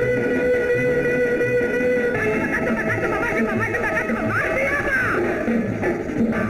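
Old Tamil film song music with guitar: a single note held for about two seconds, then a busier passage of rising and falling melody.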